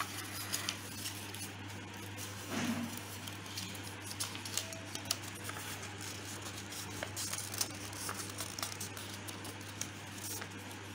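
A sheet of origami paper being handled and folded, with scattered crinkles and crease clicks. A steady low hum runs underneath.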